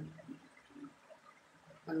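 A short pause in a woman's Hindi speech, holding only faint room noise; her voice trails off at the start and picks up again near the end.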